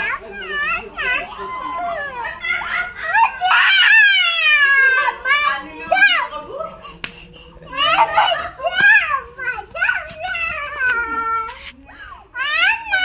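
A young girl crying loudly, in long high wails that slide down in pitch, broken by shorter sobbing cries.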